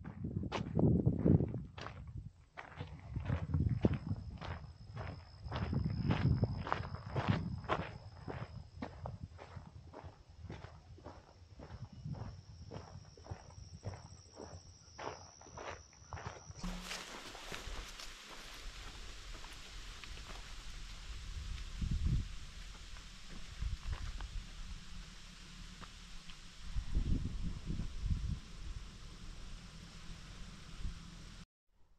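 A hiker's footsteps, sharp and regular about twice a second while crossing a paved road. About halfway through the sound changes abruptly to softer, more scattered steps on a forest dirt path with a steady hiss.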